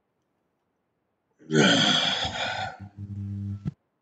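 A person's breathy, voiced exhale with falling pitch about one and a half seconds in, then a low steady hum lasting under a second that ends in a sharp click.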